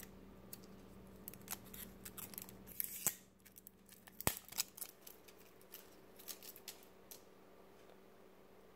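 Fingernails picking and peeling plastic shrink wrap off the cap of a plastic paint squeeze bottle: faint, scattered crinkles and clicks, with one sharper click a little after four seconds.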